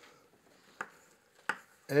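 Two sharp taps of chalk on a blackboard, about two-thirds of a second apart, as writing begins; a voice starts a word right at the end.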